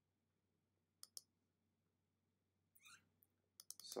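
Near silence broken by a quick pair of computer mouse clicks about a second in, and a few more soft clicks near the end just before a man starts speaking.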